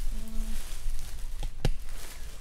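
Black plastic garbage bag rustling and clothes shuffling as gloved hands rummage through it, with two sharp clicks close together about three-quarters of the way in.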